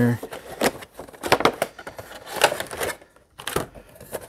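Toy packaging being handled: a plastic tray and cardboard window box crinkle, rustle and click in an irregular run of small noises as the figure is taken out.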